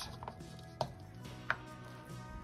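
Frozen blueberries tipped into batter in a stainless steel mixing bowl and folded in with a silicone spatula: two light knocks, a little under a second in and about a second and a half in, over soft background music.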